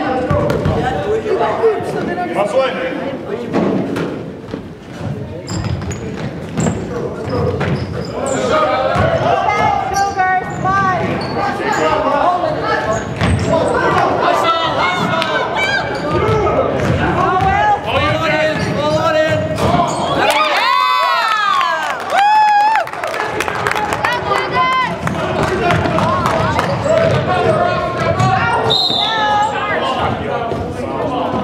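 Basketball game on a hardwood gym court: the ball bouncing and thudding on the floor with sneakers squeaking, including a burst of squeaks about two-thirds of the way in, amid spectators' and players' voices.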